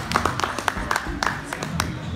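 Scattered hand clapping from a small group of spectators, uneven claps at about five or six a second, dying away near the end, applauding a young gymnast who has just finished his turn.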